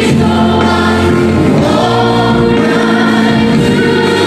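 Live contemporary worship band playing, with two women singing lead into microphones over bass guitar, electric guitar and keyboards.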